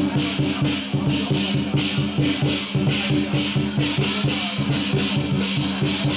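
Temple procession percussion music: drums and clashing cymbals keep a fast, even beat of about four strokes a second over a steady held low tone.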